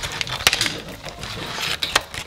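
Hands handling a phone case and its clear plastic packaging: light plastic clicks and rustling, with the sharpest click about half a second in.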